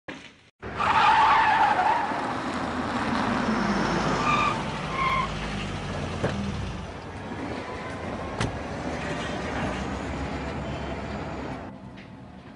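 A car pulling up: tires squeal about a second in, followed by engine and road noise, two short beeps around four and five seconds, and a steady run of vehicle noise that stops shortly before the end.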